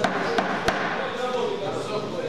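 Three sharp smacks in the first second, boxing gloves landing in a close exchange between two amateur boxers, the last the strongest, over a steady murmur of voices.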